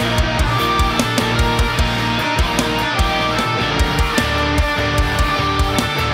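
Distorted Ibanez electric guitar tuned to D standard, playing a metalcore part over a drum and bass track, with a steady run of drum hits several times a second.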